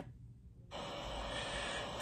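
A pause in a news report's speech: a near-silent dropout for under a second, then a steady faint hiss of background noise until the talking resumes.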